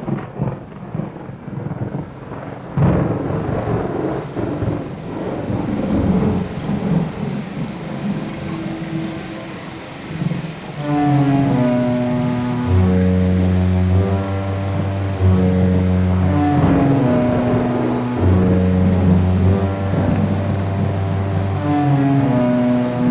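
Thunderstorm sound effect: thunder and rain, with a loud clap about three seconds in. About eleven seconds in, slow music of long held low notes comes in over the storm.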